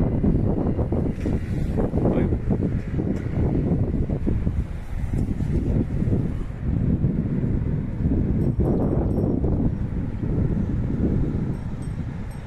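Wind buffeting an outdoor microphone: a gusting low rumble that rises and falls, easing a little near the end.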